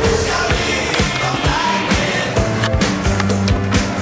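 A snowboard's edges and base scraping and knocking on hard-packed indoor snow and park features, heard over rock music with a steady beat.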